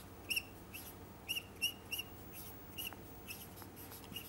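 Marker squeaking on a whiteboard while writing: a quick run of short, high squeaks, one for each pen stroke.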